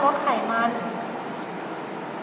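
Felt-tip marker pen writing on paper: a few short strokes as a word is written.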